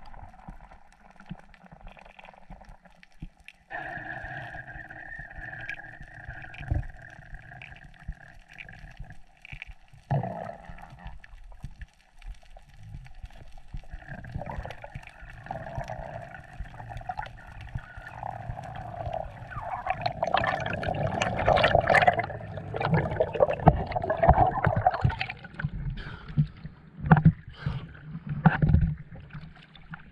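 Muffled underwater sound from a diving action camera: a steady droning hum sets in a few seconds in, and louder sloshing water with sharp knocks takes over in the second half as the diver heads up to the surface.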